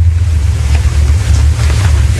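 A steady, loud low hum with a faint hiss above it and no speech.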